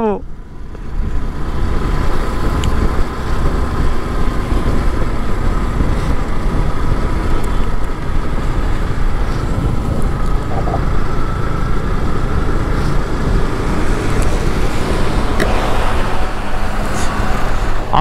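Steady wind buffeting on the microphone and road noise from a motorcycle riding at speed, with a faint steady tone running underneath.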